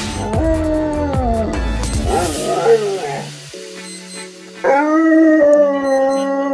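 A dog making drawn-out, wavering howls and moans, as if answering back. A quieter lull follows in the middle, then a longer, steadier howl begins about two-thirds of the way in. Background music plays underneath.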